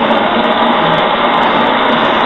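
A loud, steady rushing noise with no pitch to it.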